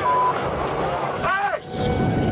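A short, steady censor bleep at the very start, followed by men shouting in a scuffle over a constant noisy background.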